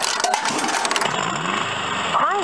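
A coin clicking and rattling down through the coin mechanism of a mid-1990s Technotots Jeep kiddie ride. About a second in, the ride's sound unit starts a recorded engine-starting effect that rises in pitch.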